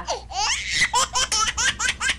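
Rapid high-pitched childlike giggling: a quick string of short laughs that climbs in pitch, voiced for a baby doll being tickled.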